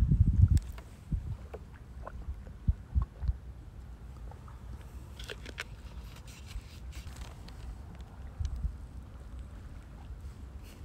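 Wind buffeting the microphone in gusts, as a low rumble that is strongest in the first half second. A few faint clicks and crackles come about five seconds in.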